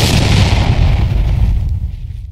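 A sudden loud boom, an intro impact sound effect, followed by a low rumble that fades away over about two seconds.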